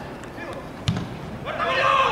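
A football struck hard once on a corner kick: a single dull thud about a second in. Players' shouts rise just after it.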